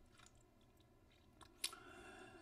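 Near silence with a few faint clicks, the sharpest about one and a half seconds in.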